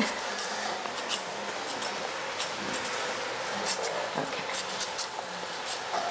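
Short, irregular scraping strokes of a small knife peeling the skin off a sweet potato, over a steady background hiss.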